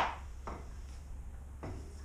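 A broom sweeping paper trimmings across the floor: three short brushing strokes, the first the loudest.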